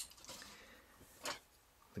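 Faint handling of a plastic toy robot and its parts: a light click near the start and one short soft rustle a little past halfway, otherwise quiet.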